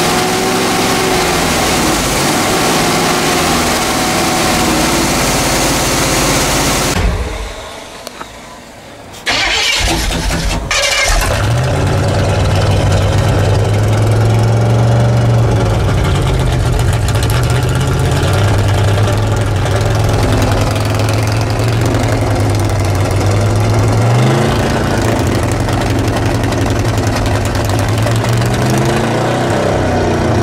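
Chevrolet 454 big-block V8 in an old motorhome, running on stale gasoline poured down the carburetor because mice chewed the fuel line. It runs unevenly and drops away for a couple of seconds about seven seconds in, then picks up again and settles into a steady idle with a couple of brief rises in revs.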